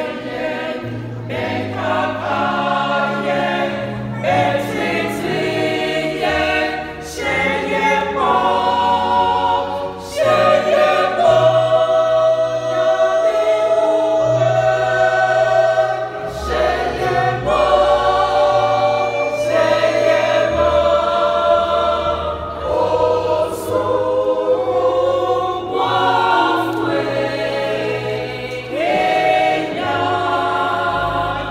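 Mixed church choir of women's and men's voices singing a hymn together in sustained, full-voiced phrases.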